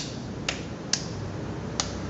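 Hands patting a ball of raw ground beef between the palms, a few short sharp slaps roughly two a second, packing the meat tight around its cheese filling to seal it.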